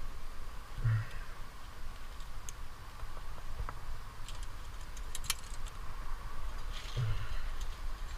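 Metal climbing gear, carabiners and cams on the climber's harness, clinking in a scatter of sharp clicks as he moves up the rock, with two short low sounds about a second in and near the end.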